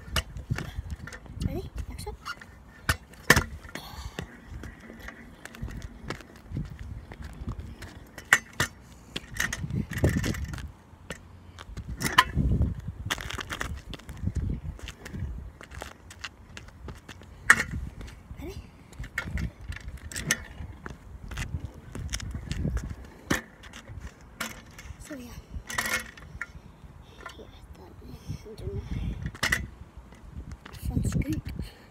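Stunt scooter clattering on asphalt: a run of sharp, irregular knocks and clacks from the deck and wheels hitting the ground, with low rumbling between them.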